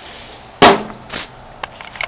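The metal lid of a Char-Broil grill is shut with one loud clang about half a second in, after a faint sizzle of skirt steak on the grill. A short hiss and a few light clicks follow.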